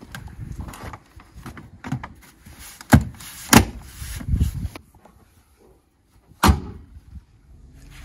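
Plastic engine cover of a 2006 VW Beetle 1.6 petrol engine being pressed down onto its mounts: handling rustle and a few sharp plastic knocks as it snaps into place, the loudest about three and a half seconds in, with one more knock about six and a half seconds in.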